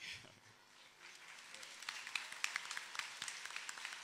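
An audience applauding, starting about a second in and building into steady clapping from many hands.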